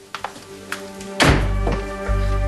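Suspenseful background music with a heavy low thud about a second in, after which a deep low drone is held.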